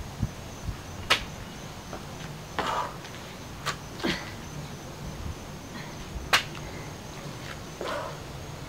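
Hands and feet landing on a thin exercise mat over concrete during lateral jumping burpees: three sharp slaps about two and a half seconds apart, one per repetition, with a few softer noises between them.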